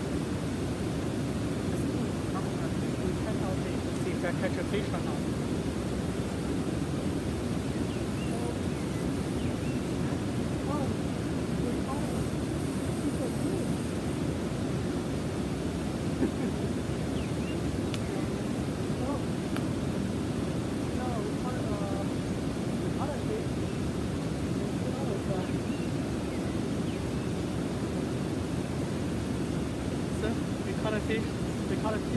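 Steady, even rushing of river water flowing over a nearby waterfall.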